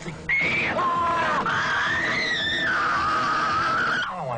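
A woman screaming: one long high scream that starts a moment in, drops in pitch, then rises again and holds before sliding lower near the end.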